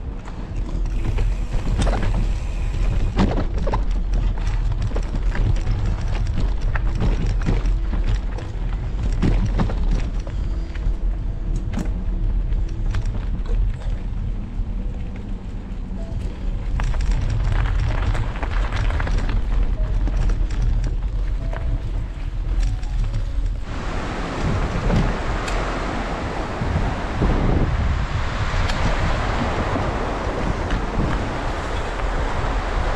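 Wind noise on the microphone of a camera riding a mountain bike, with frequent clicks and rattles from the bike on a bumpy dirt trail. About three-quarters of the way through, the wind noise turns louder and hissier.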